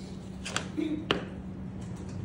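A plastic ruler picked up and set down on a table: a brief clatter and rustle about half a second in, then one sharp tap just after a second, over a steady low hum.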